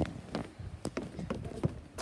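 Footsteps going down wooden deck steps and onto gravel: a quick, irregular series of taps and knocks.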